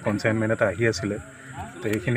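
A man speaking into news microphones, with a short pause about a second in.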